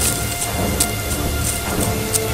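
Horror film sound design: a noisy wash of rumble and hiss with scattered high crackles, over a sustained droning music bed.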